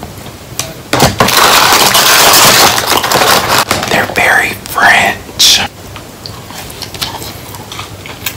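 A man whispering and making close-up mouth sounds while eating french fries. There is a long, loud hissing stretch about a second in, then breathy voice sounds.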